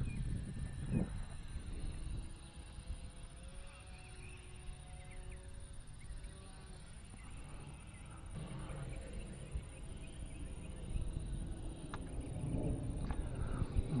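Wind rumbling on the microphone, with the faint hum of a small RC trainer plane's 1806 brushless motor and propeller flying at a distance, its note coming and going.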